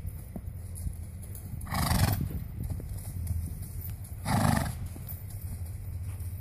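A trotting horse snorts twice, two short breathy blows about two and a half seconds apart, with faint hoof falls on sand between them.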